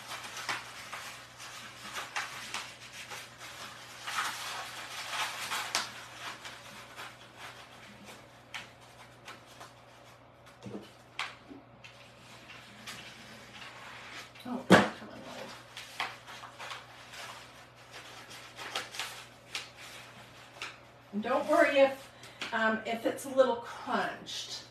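Brown kraft paper rustling and crinkling as it is rolled up around a wooden dowel, in uneven stretches, with one sharp knock a little over halfway through.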